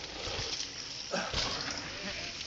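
A short, falling "oh" exclamation from an onlooker about a second in, over a steady background hiss.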